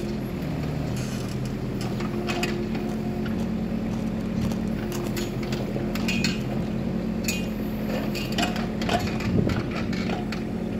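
Kubota mini excavator's diesel engine running steadily while it digs, with scattered clinks and knocks from the bucket working in rocky dirt; the loudest knock comes near the end.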